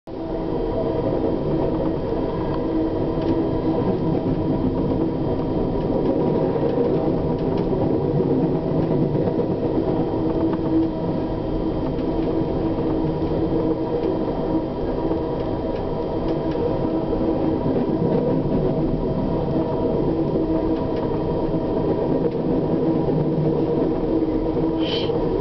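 Steady running noise inside a moving Amtrak passenger car: wheels on rail with a constant rumble and hum. It is mixed with the rush of a train of empty coal cars passing close alongside on the next track.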